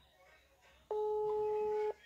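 A single steady electronic telephone tone, low and even-pitched, that starts abruptly about a second in and stops cleanly after about a second.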